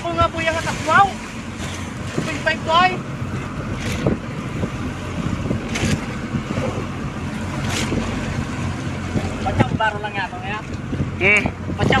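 Motor fishing boat's engine running steadily, with wind buffeting the microphone. Men's voices call out over it, and there are a few sharp knocks on deck.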